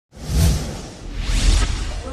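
Two whoosh sound effects for a logo animation, the first swelling up about half a second in and the second about a second and a half in, each carrying a deep low rumble.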